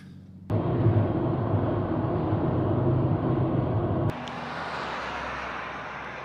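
Steady outdoor background noise, a loud rumble with no clear pitch. About four seconds in it drops suddenly to a quieter, thinner hiss.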